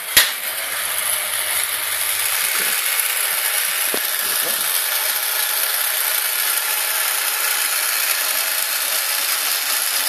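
East German 1965 Acosta MTA4 motorised toaster switched on with a sharp click, then its electric lowering motor runs with a steady mechanical noise as the bread is drawn down into the slot. A faint low hum sits under it for the first two seconds or so.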